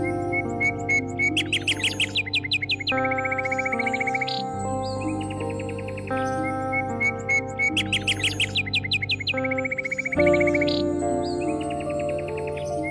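Soft meditation music with sustained notes, layered with birdsong: runs of quick chirps and a high trill that come round about every six seconds.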